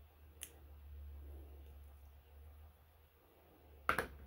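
Quiet handling of paper and small craft tools on a cutting mat: a faint click about half a second in and a sharper tap or two near the end, over a low steady hum.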